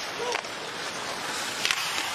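Ice hockey arena sound under a live game broadcast: a steady crowd hum with a few sharp clicks of sticks and puck on the ice, the loudest a pair near the end.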